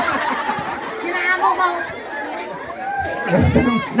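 Speech: voices talking through handheld microphones over a PA system, with chatter.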